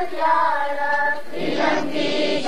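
A group of children singing together in unison, holding long notes; about a second and a half in, the held note gives way to a fuller, rougher sound of many voices.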